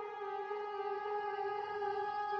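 A sustained, siren-like electronic drone holding one note with a slight waver, slowly growing louder.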